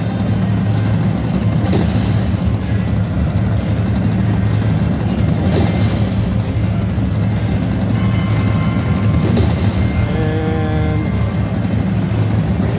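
Video slot machine playing its bonus-spin music and effects over a steady low casino hum, with a brief chime-like tone about ten seconds in.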